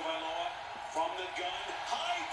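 Speech only: a sportscaster's football play-by-play commentary at low volume.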